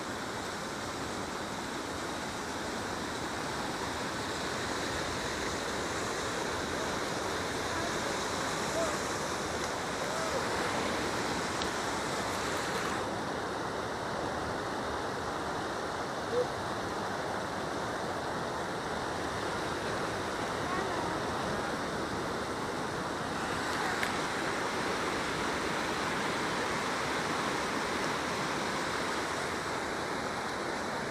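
Water rushing over a low concrete weir: a steady, unbroken rushing hiss of white water spilling down the spillway.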